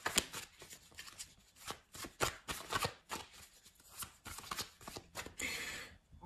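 A tarot deck being shuffled by hand: a run of irregular quick card flicks and taps, with a short papery rustle near the end.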